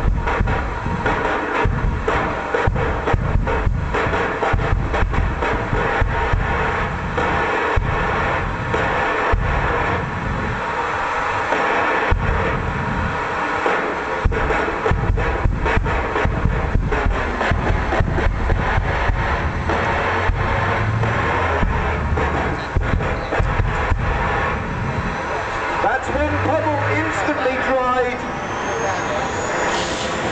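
Jet dragster's turbine engine running with a steady, loud whine and rush, with wind buffeting the microphone in low gusts. Near the end a high whine rises in pitch.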